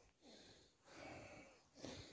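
Near silence, with a faint breath through the nose about a second in.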